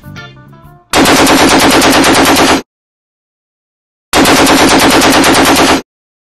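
Two loud bursts of rapid-fire staccato noise, each lasting under two seconds, about a second and a half apart, starting and stopping abruptly.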